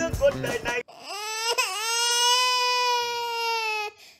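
A brief sung or spoken line over music, then a long, high crying wail held on one pitch for about three seconds, a comic exaggerated sob.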